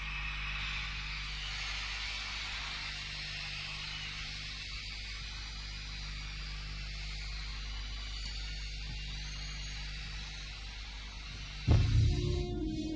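Steady low electrical mains hum with a faint high hiss during a pause between songs. A loud burst of music cuts in just before the end.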